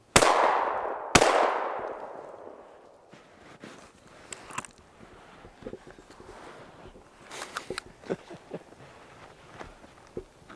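Two gunshots about a second apart at a snowshoe hare, each echoing away for over a second through the woods, followed by softer scattered knocks.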